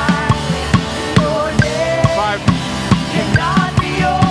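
Live band music driven by a drum kit: kick and snare drums playing a steady beat of about two to three hits a second, with cymbals, under a wavering melody line.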